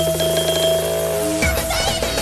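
Electronic dance music from a DJ mix: a fast repeating synth riff over a held bass note, which breaks off about one and a half seconds in as the track changes to a new section with swooping synth sounds.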